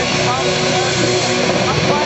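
Instrumental rock band playing live: a loud, dense, distorted mix of electric guitars, bass and keyboard, with guitar notes bending in pitch.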